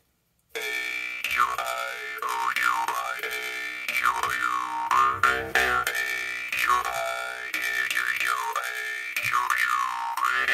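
Jaw harp twanging in a steady rhythm, starting about half a second in. Its ringing overtones sweep down and back up again and again as the player's mouth shapes the vowels A-E-I-O-U-Y.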